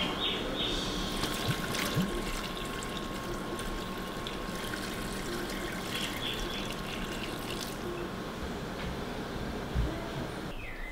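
Water pouring steadily from a glass jar into a large stainless steel stockpot of cubed raw beef fat, the water added to keep the fat from scorching on the bottom as it renders.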